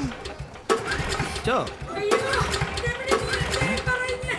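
Small engine being pull-started by hand with its recoil starter cord, a sharp yank about two-thirds of a second in.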